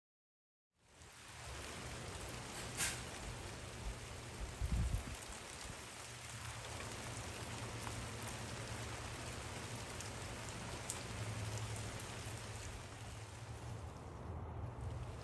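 Steady rain falling, fading in about a second in, with a sharp click about three seconds in and a low thump a couple of seconds later.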